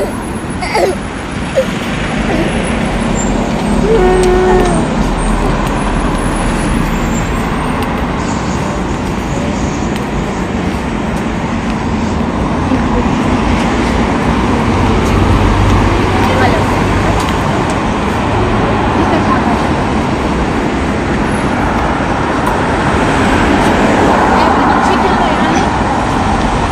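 Steady road traffic: cars and a lorry driving past on the roadway.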